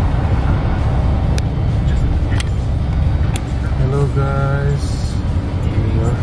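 Steady low rumble of a car driving on a snowy highway, heard inside the cabin, with a brief pitched hum about four seconds in.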